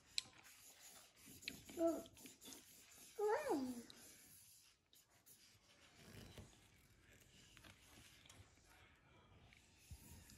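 Faint scratching of felt-tip markers on paper, with two short, wordless child vocal sounds about two and three seconds in.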